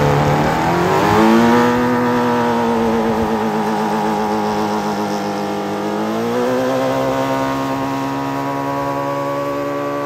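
Can-Am Maverick X3 XRS side-by-side's turbocharged three-cylinder engine held at high revs during a burnout, its rear tyre spinning and smoking against the body of a wrecked car. The revs climb about a second in, hold, then climb again about six seconds in and stay up.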